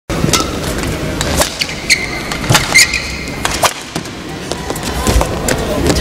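Badminton rally: a series of sharp racket-on-shuttlecock hits at irregular intervals, with brief high squeaks of shoes on the court floor, over a steady arena hum.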